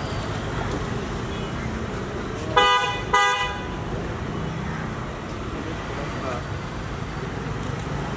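A vehicle horn sounds twice in quick succession, two short blasts about two and a half seconds in, over a steady low rumble of street traffic and running engines.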